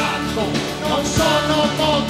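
A rock band playing live with electric guitars and drums, with voices singing over it.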